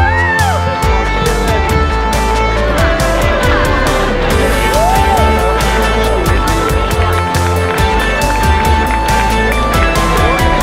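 Music with a steady beat and held notes.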